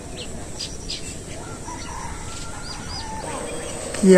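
Village outdoor ambience: small birds chirping in short, high calls, with faint chickens clucking in the distance over a steady background hiss.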